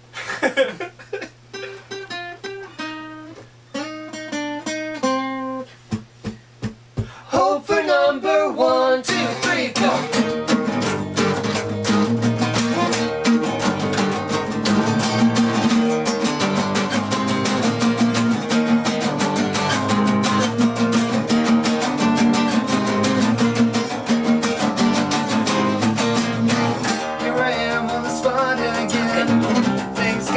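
Two acoustic guitars and an acoustic bass guitar playing together. It opens with single picked notes for about nine seconds, then the whole group comes in strumming.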